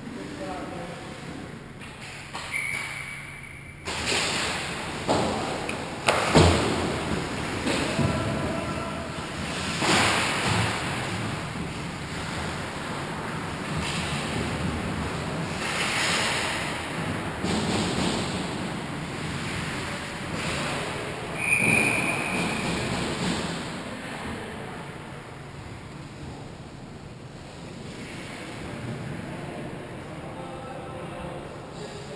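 Ice hockey play echoing around an indoor rink: skates scraping the ice, several sharp knocks of sticks and puck in the first third, and voices calling out.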